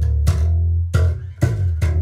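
Five-string electric bass guitar played through a bass amp and 4x12 speaker cabinet: a short phrase of low notes with sharp, bright attacks, one of them held for about half a second.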